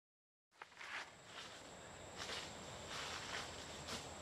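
Faint footsteps crunching on the ground outdoors, about one step a second, over a steady high-pitched insect drone. The sound cuts in from dead silence about half a second in.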